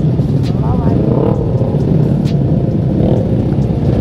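Engines of a dense pack of motorcycles and scooters running at low speed close around the microphone, a steady loud low rumble.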